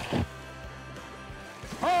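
Background music with steady sustained tones. Near the end a man shouts a long "Oh!" that falls in pitch.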